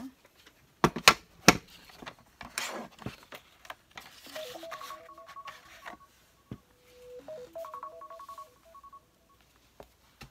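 A laundry appliance plays its electronic tune of stepped beeps, once about four and a half seconds in and again a couple of seconds later, the kind of chime that marks the end of a wash or dry cycle. Before it come two sharp knocks about a second in.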